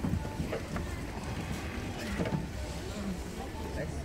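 Outdoor background at a busy skating rink: a steady low rumble with faint, brief snatches of people's voices nearby.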